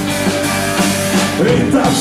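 Live blues-rock band playing an instrumental passage between sung lines, with electric guitar and drums.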